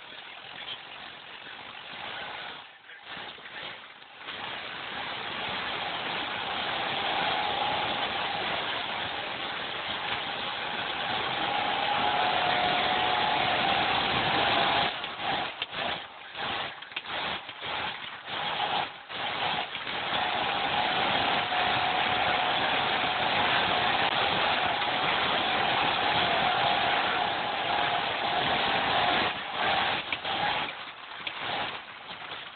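Volvo 240 being driven over a rough field track, its engine and road noise heard from inside the cabin. It grows louder over the first dozen seconds as the car speeds up, and the sound dips out briefly several times about halfway through.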